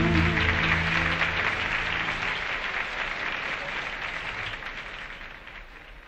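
Audience applause as the last notes of a ghazal die away, with a low held note underneath for the first couple of seconds. The applause fades out steadily.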